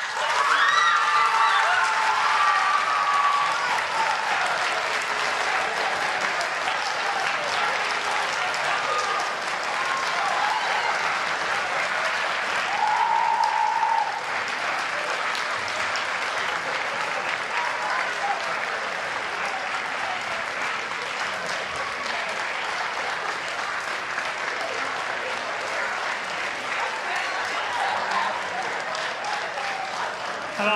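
Audience applauding and cheering, starting suddenly and loudest in the first few seconds, with shouts and whoops over the clapping, then going on steadily a little softer.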